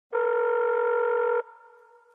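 A steady electronic tone, held for about a second and a quarter, then cut off sharply, leaving a short fading echo.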